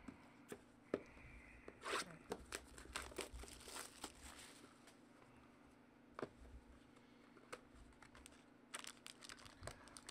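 Faint packaging handling: light clicks and taps as small cardboard trading-card boxes are moved on a table, with a stretch of crinkling and tearing about two seconds in. More clicks come near the end as a box's foil wrapping is pried open.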